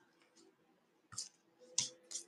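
Two faint short clicks, about a second in and near the end, the second the louder.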